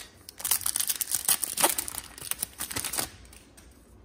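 Foil wrapper of an Upper Deck hockey card pack being torn open and crinkled by hand, a dense crackling from about half a second in that stops about three seconds in.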